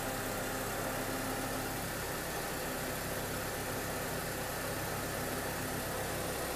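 Mercedes-Benz CLK (W208) engine idling, a steady even hum.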